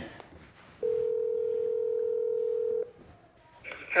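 Telephone ringback tone through a smartphone's speakerphone: one steady ring about two seconds long, the sign that the outgoing call is ringing at the other end.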